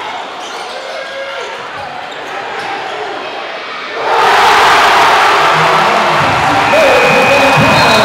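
Basketball dribbling on a hardwood gym floor over a crowd murmur. About halfway through, the crowd suddenly breaks into a loud roar of cheering and shouting as a shot goes up.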